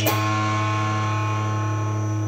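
Distorted electric guitar: a final chord struck once at the start, then left ringing at a steady level with a buzzing sustain.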